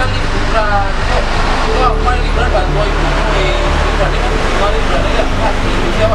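Conversational speech between young people in Indonesian, over a steady low background rumble.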